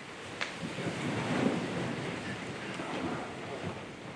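A roomful of people sitting down at once in upholstered chairs: a steady spread of rustling and shuffling from clothes and seats, with one sharp click about half a second in.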